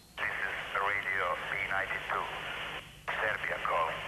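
A Radio B92 station ident: a voice announcing in a foreign language 'You are listening to Radio B92, the voice of Serbia,' with the thin sound of a radio broadcast. It comes in two phrases with a short break about three seconds in.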